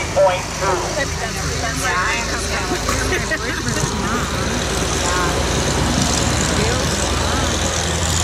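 Farm tractor engine running steadily under load as it pulls a weight-transfer sled at low speed, with people talking over it.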